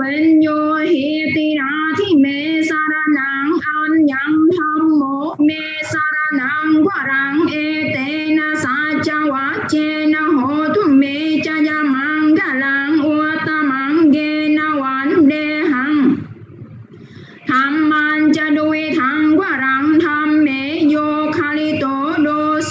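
A high voice singing a chant-like melody that stays close to one pitch. There is a brief pause for breath about sixteen seconds in, then the singing resumes.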